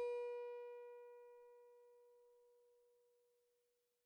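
A single musical note, struck just before and left ringing, fading away to nothing over about two and a half seconds. The note sits near B above middle C.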